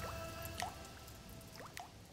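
Faint water drops falling one by one into water, a few separate short plinks, each rising quickly in pitch. They sound over the last fading notes of the song's music.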